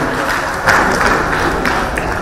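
Audience applause: dense clapping that starts suddenly, with a few louder single claps standing out.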